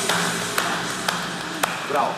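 A few slow, single hand claps, spaced about half a second apart, in a quiet, echoing room.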